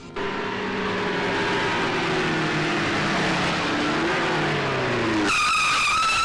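A car driving off fast, its engine note slowly falling under a loud rush of tyre noise, then a high-pitched tyre squeal about five seconds in.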